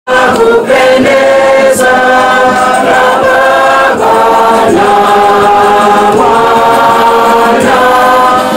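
A choir sings an offertory hymn in long, held chords that move to a new chord every second or so.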